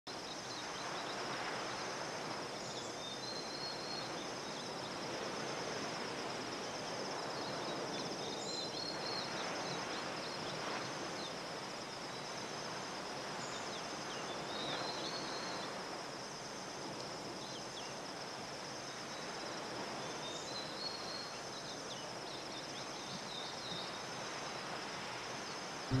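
Tropical dawn ambience: a continuous high insect trill, short bird chirps every few seconds, and a soft, gently swelling wash of distant surf underneath.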